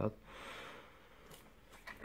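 A man's speech trails off, then a soft breath-like hiss, a brief faint click, and a short in-breath just before he speaks again.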